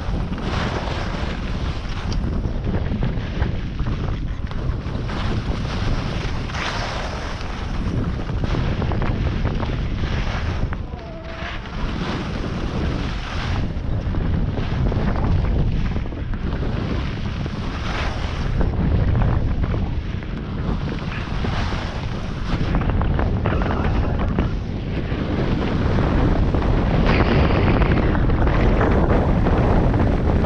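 Wind rushing over the microphone of a camera worn by a skier on a downhill run, with the hiss of skis on groomed snow swelling and fading every couple of seconds as the skier turns.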